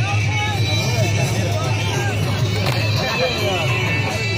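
Live attan dance music, a dhol drum with a shrill reed wind instrument, played outdoors under the talk of a large crowd of men.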